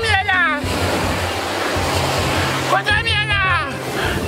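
A man's voice in two short phrases over background music with a steady bass line, and a rushing wash of surf noise in the gap between the phrases.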